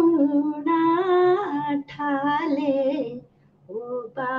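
A woman singing a Haryanvi ragini (folk song) unaccompanied, in two long, wavering phrases with a brief break between them. A short pause follows before she goes on.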